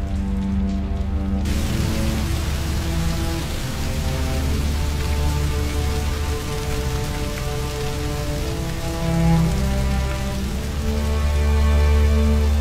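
Slow background music of long held notes over a deep low drone, joined about a second and a half in by the steady hiss of a house fire burning.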